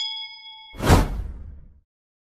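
Bright bell-like notification ding from a subscribe-button animation, ringing for under a second. It is cut off by a loud whoosh with a deep boom, the loudest sound here, which fades out within about a second.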